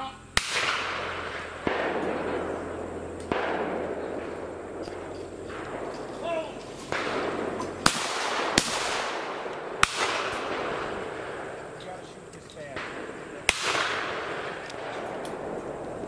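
A series of shotgun shots at clay targets: sharp cracks, some close and loud, others fainter, each trailing a long rolling echo. Two close shots come under a second apart near the middle, typical of a pair of targets, with further shots before and after.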